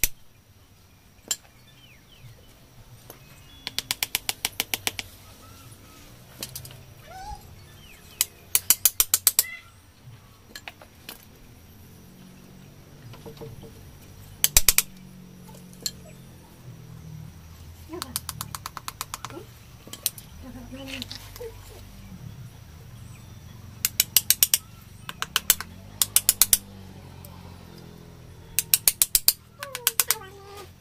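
Bursts of rapid metal taps, each about a second long and coming several times, as a blade is tapped with a mallet into the thick roots of a Ficus microcarpa bonsai to split them.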